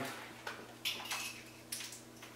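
A few light clicks and clatters of small hard objects being handled, about half a second in, around a second in and near the end, over a faint steady hum.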